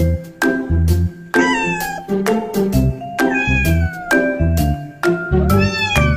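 Background music with a steady beat and a bright mallet-percussion tune, with a cat meowing twice over it: once about a second and a half in, falling in pitch, and again near the end.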